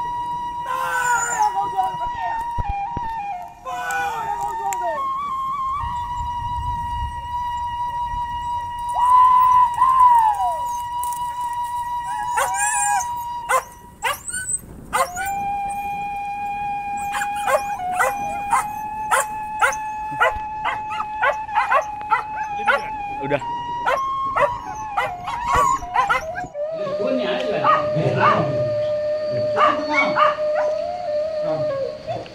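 Hunting dogs barking and howling: falling howl-like cries near the start and again about ten seconds in, then a fast run of barks in the second half. A steady high tone is held underneath throughout and steps down in pitch twice.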